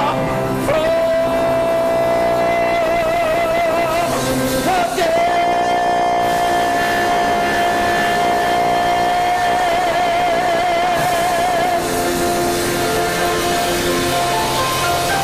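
Male gospel soloist holding two long high notes into a microphone, the second about seven seconds long and ending in a wide vibrato, over live band accompaniment.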